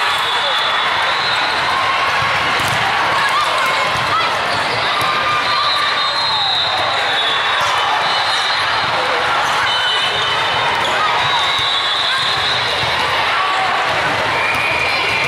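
Busy indoor sports hall din: many voices talking and calling at once, with volleyballs being struck and bouncing on the hard court floor at scattered moments, echoing in the large room.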